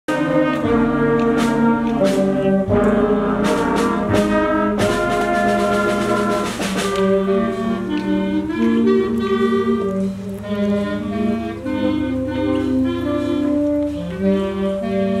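Concert band of brass, saxophones and woodwinds playing a piece with percussion hits. The band plays full for about the first seven seconds, then drops to a lighter, softer passage.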